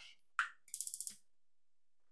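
Gas range's electric spark igniter clicking rapidly as a burner knob is turned to light the burner, one burst of about half a second, with a short knock just before.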